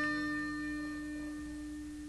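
Acoustic guitar chord ringing out and slowly fading, with no new strum: one low note holds steady beneath higher notes that die away.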